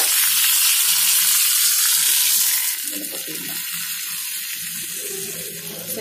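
Hot oil sizzling in a small tempering pan with curry leaves and a dried red chilli, the tadka for aviyal. The hiss is loud, then eases about halfway through.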